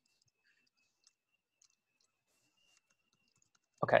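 Near silence with a few faint clicks and a faint steady high-pitched tone, then a voice near the end.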